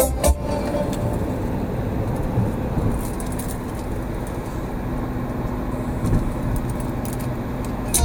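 Steady road and tyre noise with engine hum inside a car's cabin at highway speed. Music from the car stereo stops just after the start and comes back at the very end.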